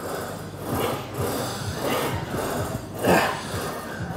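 A bodybuilder breathing hard in a quick rasping rhythm as he grinds through a high-rep leg press set, past thirty reps toward fifty. One louder strained breath comes about three seconds in.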